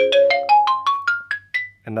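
A quick rising run of about ten struck mallet-percussion notes over a held low chord, climbing roughly two octaves. It ends on a single high note that rings briefly about one and a half seconds in.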